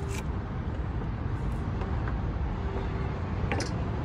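Steady low rumble of a vehicle engine running nearby, with a few faint light knocks of a wooden broomstick being worked into the axle housing.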